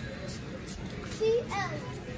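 A child's voice: a short high call about a second in, then a falling cry, over steady background noise.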